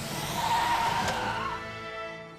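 Animated cars' tyres squealing as they skid in, over background music; the squeal wavers through the first second and a half, then fades.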